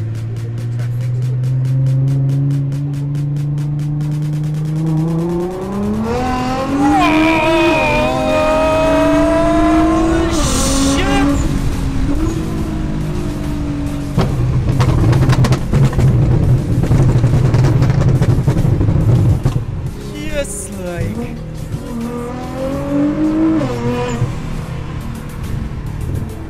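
Straight-piped, tuned Nissan GT-R R35's twin-turbo V6 heard from inside the cabin, pulling hard through the gears. The engine note rises in pitch in long pulls that drop back at each shift, with exhaust cracks and pops throughout.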